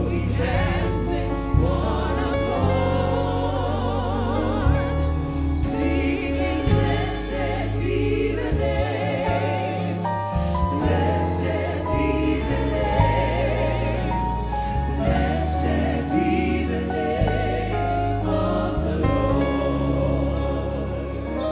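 Live gospel praise-and-worship music: a praise team of several singers backed by a drum kit, bass guitar and keyboard. The voices are held with vibrato over a steady bass line and drum beat.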